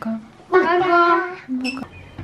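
A child's voice calling out in one long drawn-out sung note, then a short second call.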